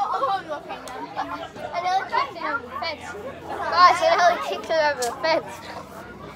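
Children talking and calling out over one another, loudest about four seconds in.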